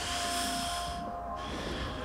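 A man breathing between sentences while hanging from a pull-up bar: one long hissing breath of about a second, then a shorter, softer one.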